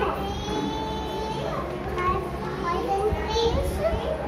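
Children's high-pitched voices talking and chattering, over a steady low hum.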